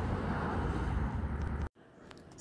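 Steady background rumble and hiss with no speech, cutting off abruptly near the end.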